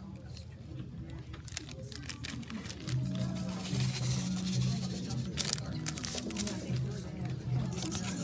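Low background music, with a paper packet of vanilla powder crinkling and tearing as it is opened and shaken out, the sharpest crackle about five seconds in.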